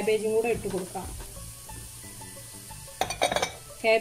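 Shredded cabbage, carrot and green capsicum sizzling in a hot wok, with a short burst of clattering about three seconds in.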